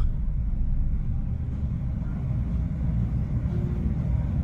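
Steady low rumble with a faint hiss above it, from a running electric pedestal fan.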